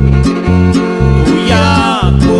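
A Mexican string trio's instrumental passage: violin over strummed guitars, with bass notes pulsing about four times a second and a sliding phrase near the end.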